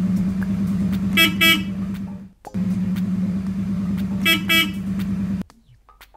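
Sound effect of a car engine running with the horn tooting twice, played through two times with a short break between, then cutting off about five and a half seconds in.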